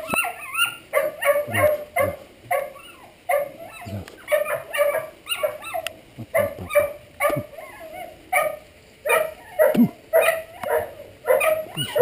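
Young English setter whining and yelping in short, high cries that come again and again, often several a second.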